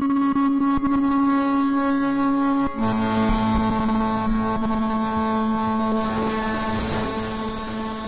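Native Instruments Absynth 4 software synthesizer sounding its 'Wave Destrukt' preset: one sustained synth note with a hissing, noisy upper layer, which drops to a slightly lower pitch about three seconds in and holds there.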